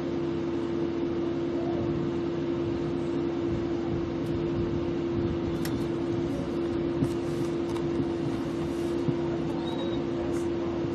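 A steady hum at one constant pitch over a wash of background noise, with a couple of faint knocks about seven and nine seconds in.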